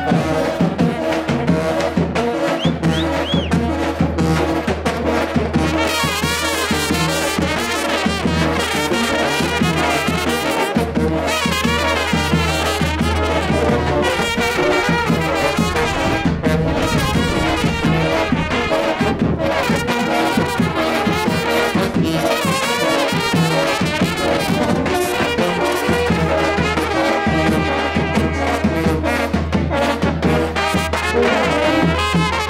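Brass band of trumpets and a sousaphone-style tuba playing a tune without a break, with the tuba carrying a steady low bass.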